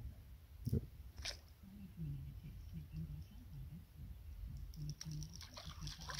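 Two sharp knocks about a second in, then a low, wavering sound in short pieces. Near the end, a hooked eel splashes at the water's surface as it is reeled to the bank.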